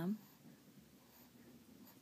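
A voice calling out a drawn-out name, cut off just after the start, followed by quiet room tone.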